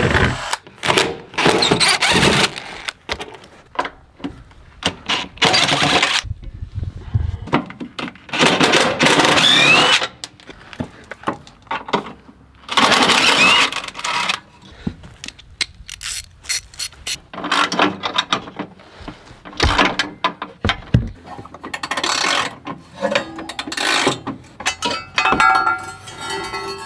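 DeWalt cordless driver run in repeated bursts of one to two seconds, with short pauses between them, while it backs out the bolts holding a bar under a Suzuki Carry mini truck. Some bursts start with a rising motor whine.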